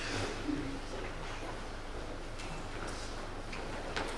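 Quiet hall ambience with faint, indistinct voices.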